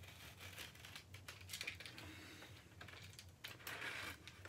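Plastic shrink-wrap on a vinyl LP sleeve being slit with a utility knife and pulled open: faint crinkling and tearing with scattered small crackles.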